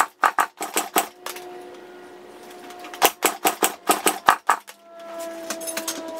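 Kawasaki two-stroke dirt bike being kick-started, the engine turning over with a rapid clatter but not firing: it does not start. Two rounds of kicks, one at the start and another about three seconds in.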